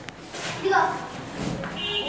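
A child's high, wavering voice calling out over background chatter. Near the end a steady held note starts.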